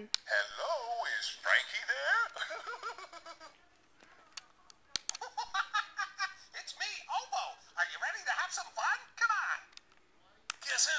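Baby Genius Swivel and Sounds toy cell phone playing a character's voice through its small speaker, in two sing-song phrases with a pause of about two seconds between them. A sharp click comes in the pause.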